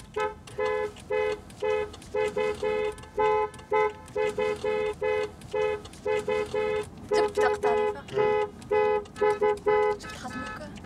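Car horns honking over and over in quick rhythmic groups of short two-note toots, as a wedding car procession does through the streets.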